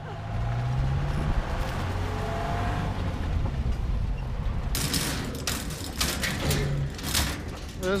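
A low steady engine hum. From about five seconds in, irregular clattering knocks and rattles of a metal mesh transport crate as a lion moves around inside it.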